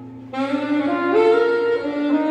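Live saxophone coming in about a third of a second in and playing a rising phrase of held notes, over acoustic guitar accompaniment.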